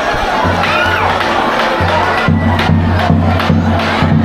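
Crowd cheering and shouting, children's voices among them, over dance music; a heavy bass beat with regular drum hits comes in about two seconds in.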